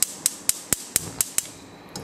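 Gas stovetop's spark igniter clicking about four times a second, stopping about one and a half seconds in as the burner lights.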